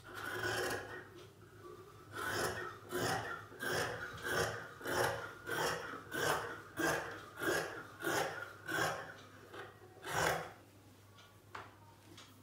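Scissors snipping through fabric along a marked cutting line: a short cut at the start, then a steady run of about a dozen rasping snips, a little under two a second, and one last snip about ten seconds in.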